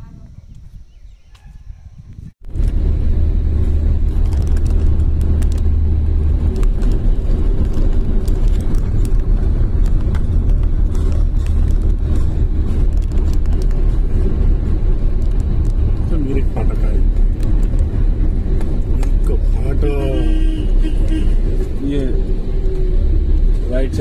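Loud, steady rumble of a moving vehicle with wind noise. It starts abruptly about two seconds in, and a voice is heard briefly near the end.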